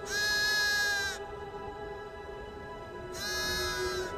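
A ram bleating twice, a call of about a second and then a shorter one, over held background music.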